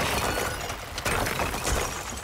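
Wrecking ball smashing into a stone tower wall, with masonry crashing and crumbling down in several loud crashes.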